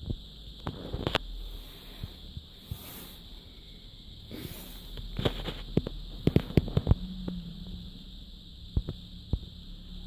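Scattered sharp clicks and knocks, with a dense run of them between about five and seven seconds in and two more near the end, over a steady faint high-pitched whine.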